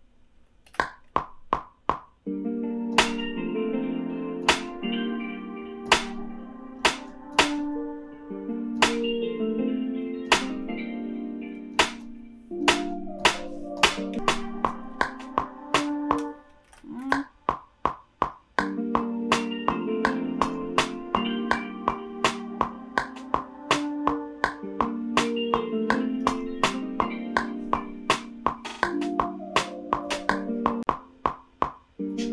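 Beat playing back from a music production program: a plucked guitar melody loop with sharp, evenly spaced percussion clicks over it. A few clicks sound alone at first, the melody comes in about two seconds in, drops out briefly a little past halfway and starts over.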